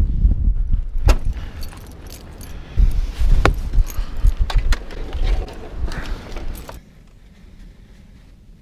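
A bunch of metal keys jangling on a lanyard while wind buffets the microphone, with a few sharp clacks along the way. Near the end the wind noise drops off suddenly to a much quieter level.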